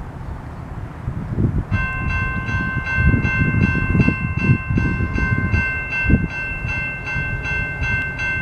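Railroad grade-crossing warning bell starting to ring about two seconds in, with rapid, evenly spaced strikes: the crossing has activated for an approaching train. A low, uneven rumble runs underneath.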